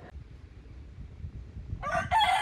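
A low background rumble, then near the end a rooster begins to crow.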